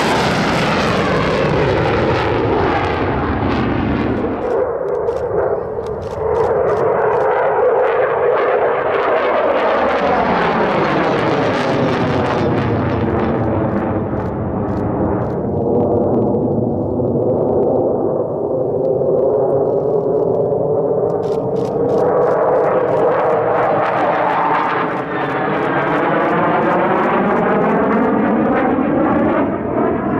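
F/A-18 Hornet fighter jet's twin jet engines at high power as the jet climbs away and flies overhead: loud, continuous jet noise with a hollow whooshing pattern that sweeps up and down in pitch as the aircraft moves, briefly easing around 5 s in and again near 25 s.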